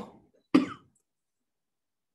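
A woman gives one short cough about half a second in.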